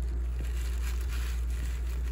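A steady low hum, with a few faint soft ticks of a fork working turkey meat in a plastic-lined crock pot.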